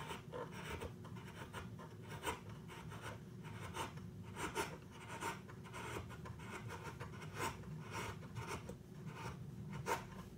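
Freshly sharpened skew chisel paring across the end grain of a wooden board: a run of faint, short scraping strokes, about one or two a second, as very fine shavings come off.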